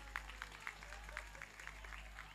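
Faint, scattered hand clapping from an audience, a few irregular claps each second.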